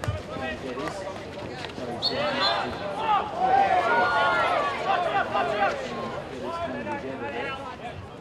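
Several male voices shouting and calling to one another across a field hockey pitch, busiest from about two seconds in, with a few sharp knocks.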